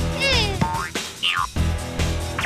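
Cartoon background music over a repeating bass figure, with two quick falling, springy pitch glides laid on top as sound effects.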